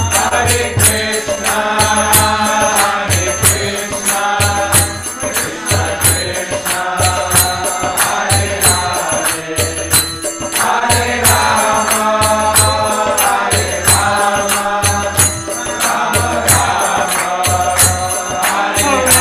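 Devotional chant sung by a man's voice, in long phrases, accompanied by hand cymbals (kartals) struck in a steady rhythm and a low drum beat.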